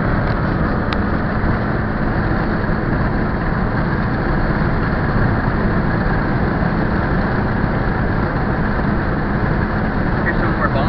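Steady road and engine noise heard from inside a car's cabin while driving on a highway, with one faint click about a second in.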